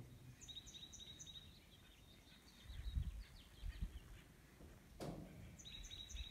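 Small birds chirping in quick runs of short high notes, once early and again near the end, over faint outdoor background noise, with a few low rumbling bumps on the microphone about three seconds in.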